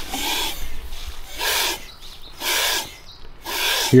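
Water hissing into a cattle water trough through a float valve, in repeated spurts about a second apart, as the valve opens when the float drops below the water level.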